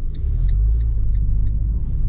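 Cabin sound of a Fiat 500 driving slowly over cobblestones: a steady low rumble, with the turn signal ticking about three times a second.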